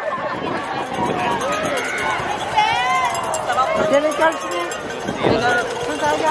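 Overlapping voices of a street parade crowd, people talking and calling out over one another.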